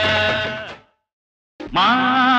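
Indian film song music fading out on a long held note, a brief dead silence of under a second, then the next song starting abruptly with a wavering held note.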